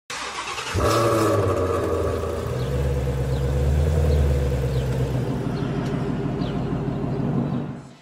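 Cinematic logo-intro sound effects: a sudden hit about a second in, then a low rumbling drone with sustained tones over it, fading out near the end.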